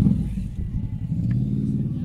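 A motorcycle engine running nearby, a low steady rumble whose pitch bends slightly up and down.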